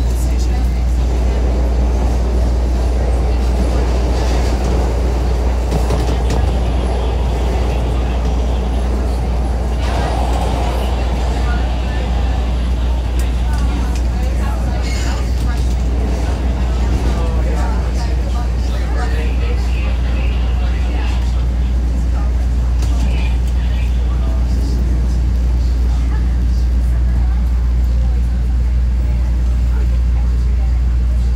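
CTA Red Line subway train running through a tunnel, heard from inside the car: a steady, loud low rumble of motors and wheels on rail, with scattered clicks throughout.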